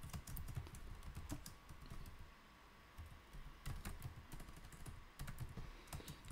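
Faint computer keyboard typing: uneven runs of key clicks, thinning out briefly about two seconds in.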